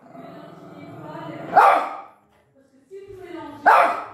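Miniature pinscher growling low and steadily for about a second and a half, then letting out a sharp bark; after a short pause it gives a brief whine and barks again near the end.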